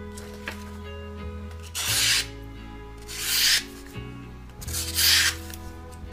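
A small Japanese fruit knife slicing through a sheet of paper three times, each stroke a short rasping swish, over background music. The blade cuts through cleanly, a test of its sharpness.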